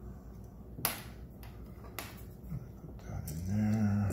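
A few small plastic clicks as a GoPro Hero 7 camera and its charging cable are handled, with one sharp click about a second in. Near the end a man gives a low, steady hum lasting under a second.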